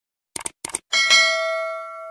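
A subscribe-animation sound effect: a few quick clicks, then a bell ding about a second in that rings on and fades away.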